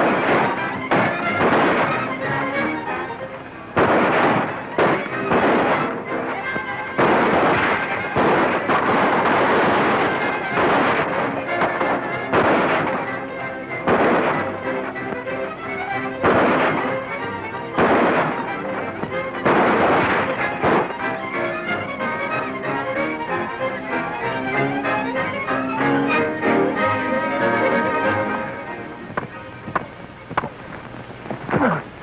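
Dramatic film-score music under a string of sharp gunshots, cracking every second or two for the first twenty seconds or so, then the music carries on with only a few more. Old narrow-band film soundtrack.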